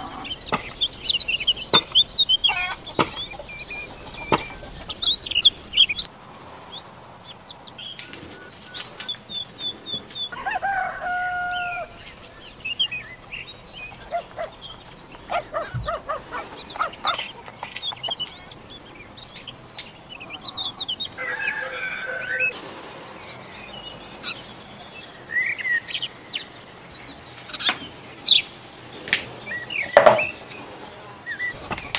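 Small birds chirping with short high calls, and a chicken calling a couple of times, over scattered light clicks.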